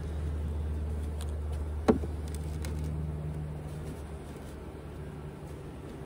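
A single sharp knock of wooden hive equipment about two seconds in, as the hive is put back together. It comes over a low steady hum that fades after about four seconds.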